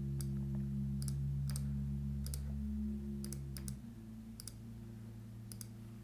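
Irregular sharp clicks, roughly one to two a second, over a low steady hum of several held tones. The hum drops in level about four seconds in.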